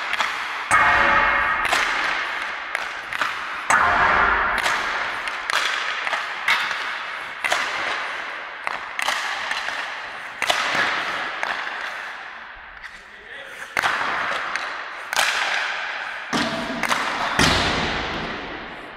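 Ice hockey sticks striking pucks in a shooting drill: a string of sharp cracks about once a second, with pucks hitting the boards, each ringing out in the long echo of a large ice arena.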